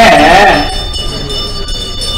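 A man's voice speaking, trailing off about half a second in, then a pause in which only a steady set of faint high-pitched tones and low background hum remain in the recording.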